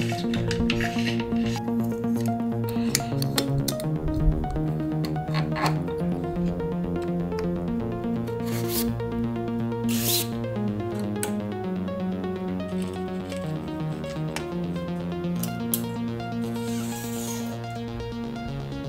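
Background electronic music, with intermittent rubbing, rasping and clicks from bike parts being handled and fitted by hand.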